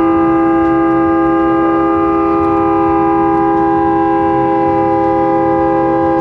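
Riverboat's horn sounding one long, steady blast of several tones at once: the departure signal that the boat is about to leave.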